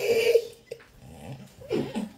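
A woman's short wordless vocal sounds: a loud cry in the first half-second, then small handling noises from the phone, and another brief vocal burst near the end.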